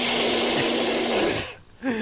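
A man's long, raspy, straining scream on one held pitch as he fights against restraints, breaking off about a second and a half in. A short laugh follows near the end.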